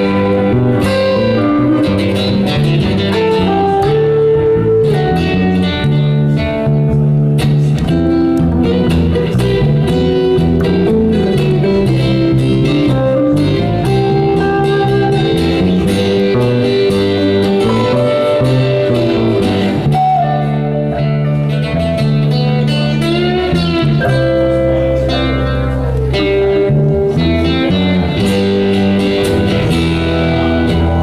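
Live band of acoustic and electric guitars playing an instrumental passage with no singing. An electric guitar leads, with notes bent upward about two-thirds of the way through, over steady chords and a sustained low end.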